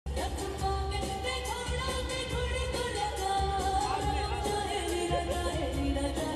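A woman singing into a handheld microphone, amplified through a PA, holding long notes with vibrato over an instrumental accompaniment with a steady beat.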